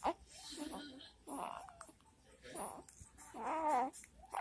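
Young infant cooing: a few short vocal sounds, the last and loudest a wavering one near the end.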